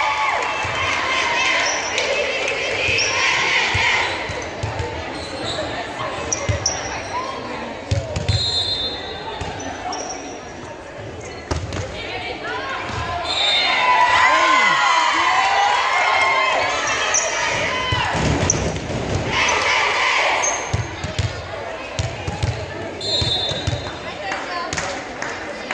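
Indoor volleyball match in a large gymnasium: players and spectators shouting and cheering, loudest about halfway through and again near the end, with sharp ball hits echoing in the hall.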